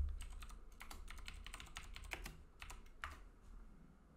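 Typing on a computer keyboard: a quick, irregular run of key clicks, after a low thump at the start.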